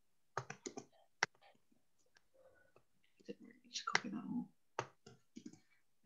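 Scattered clicks of computer keyboard keystrokes, a few in quick succession about half a second in, a single sharper one just after a second, and a few more near the end, with a brief faint murmur of voice around four seconds in.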